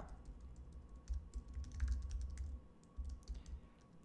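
Someone typing on a computer keyboard: quick, irregular, light key clicks with soft low thumps under them, thinning out near the end.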